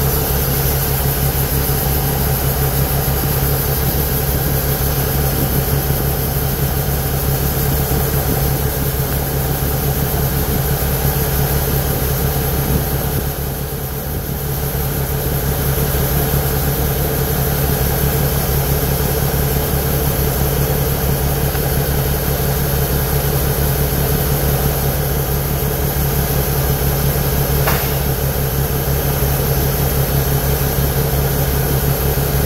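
A diesel engine drones steadily while shelled corn pours from a grain cart's auger spout into a grain trailer. The sound dips briefly about halfway through, and there is a single click near the end.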